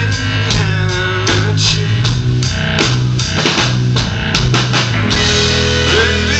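Live rock band playing loudly: drum kit keeping a steady beat of about two hits a second, with electric guitar and a held bass line.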